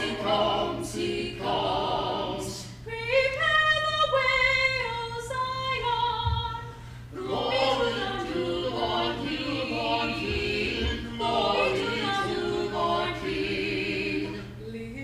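A small church choir of four mixed voices singing a hymn anthem under a conductor, with a single line standing out alone for a few seconds about three seconds in before the full group returns.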